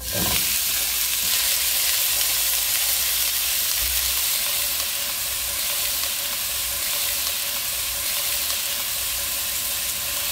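Chicken pieces tipped into a hot oiled nonstick frying pan, setting off a sudden, loud, steady sizzle of frying.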